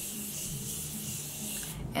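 Morphe Continuous Setting Mist being sprayed onto the face: one long, steady hiss of fine mist that cuts off near the end.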